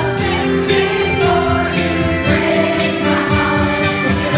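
Karaoke: women singing along to a backing track with a steady beat.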